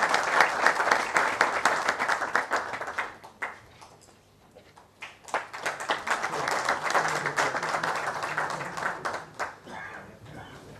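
Audience applause in a large hall. It dies away about four seconds in, and a second round of clapping starts a second or so later and fades out near the end.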